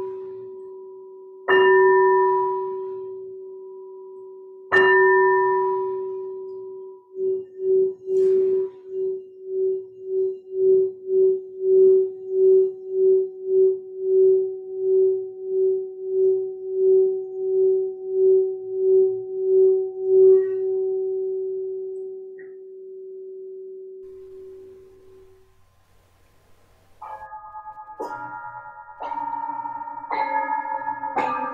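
A small dark singing bowl is struck three times with a mallet, each time ringing out and fading. It is then rubbed around the rim with the mallet, which draws out a sustained tone at the same pitch that pulses about twice a second before fading away. Near the end several larger brass singing bowls are struck in turn, so tones of different pitches overlap.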